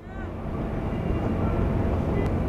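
Steady low rumble with a hiss over it, the field sound of a loaded container ship under way on a river. It fades in over the first half second, then holds steady.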